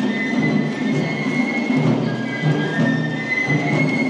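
Suzume odori festival music: a high melody holding long notes over a steady low beat, mixed with crowd noise.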